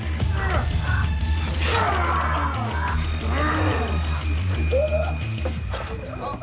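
Dramatic film soundtrack music over a steady low rumble, with men groaning and straining in a fistfight. There is a sharp hit about two seconds in and another near the end.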